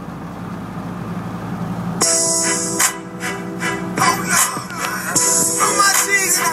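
Steady low drone inside a moving pickup's cab. About two seconds in, a hip-hop song with rapped vocals starts abruptly over the truck's car audio and subwoofer system.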